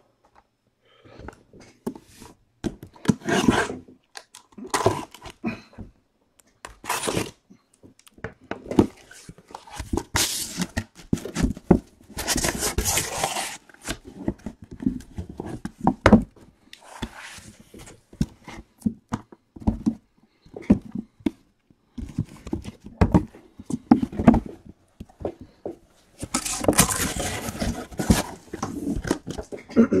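Cardboard shipping case being opened and its sealed boxes handled: irregular scraping, rustling and tearing of cardboard with occasional knocks, including two longer scraping runs near the middle and near the end.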